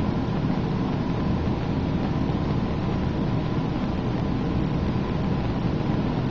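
Steady air-conditioning noise in a small room: an even hiss over a low rumble, with nothing else standing out.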